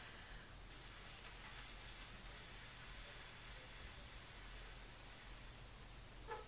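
Faint, steady exhalation: a slow, even stream of breath let out while the abdominal and intercostal muscles keep the diaphragm from rising, so the air does not all leave at once.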